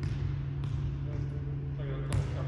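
Volleyball bouncing on a hardwood gym floor, a couple of faint thuds, over a steady low hum of the gym, with faint voices near the end.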